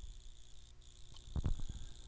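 Faint background noise of a voice recording: a steady thin high-pitched whine and hiss, with a few soft clicks about a second and a half in.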